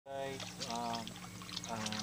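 A man talking, in short phrases, over a steady low hum and faint running water.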